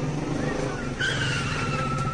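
Sound effect of a car speeding away: an engine running, with a tyre screech that starts about halfway through and slides slightly down in pitch.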